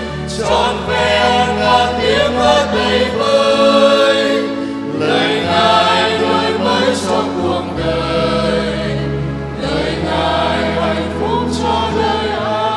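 Church choir singing a hymn in long held notes over steady accompanying bass notes that change every few seconds.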